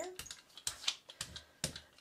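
Small rubber brayer rolled over a clear stamp on an acrylic block, spreading tacky water-based block printing ink: a quick, irregular run of small sticky clicks and crackles.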